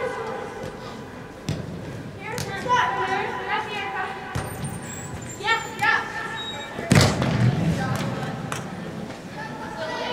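Soccer ball kicked on artificial turf in a large indoor hall, with one loud kick about seven seconds in and lighter touches between, among girls' shouts and calls from players and spectators that echo in the hall.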